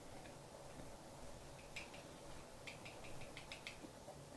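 Faint small handling clicks and ticks against quiet room tone: a single one near the middle, then a quick run of several over about a second near the end.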